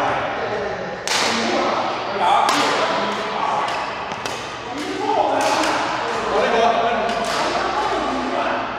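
Badminton rackets striking a shuttlecock in a rally, a string of sharp cracks at irregular intervals, each ringing on in a large hall, with voices behind.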